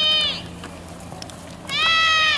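A spectator's high-pitched, drawn-out yell held on one pitch, cheering on the play; it ends about half a second in, and a second long yell starts near the end.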